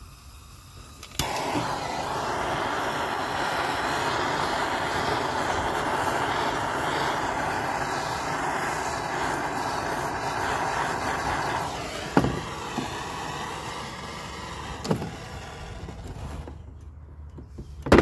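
Handheld gas torch, starting abruptly with a click about a second in, then hissing steadily as its flame plays on a leather boot. The hiss softens about two-thirds of the way through, with a few clicks after and a loud knock near the end.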